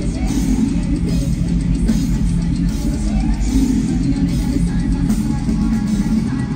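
Live heavy metal band music, loud and bass-heavy, with drums driving a steady beat.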